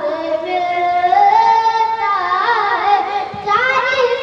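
A boy singing a naat solo into a microphone, holding long notes with wavering, ornamented turns in pitch. There is a short breath about three seconds in before the next phrase rises.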